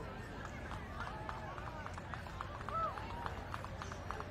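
Indistinct background voices of people talking, with quick repeated ticking sounds through most of it.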